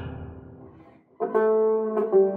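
Background guitar music: the previous notes die away to a brief silence, then a new chord is struck just over a second in and rings on.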